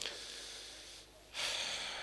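A man drawing a breath close to the microphone about one and a half seconds in, after the tail of his voice fades out.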